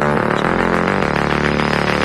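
Background intro music with steady held low tones and a few brief note changes.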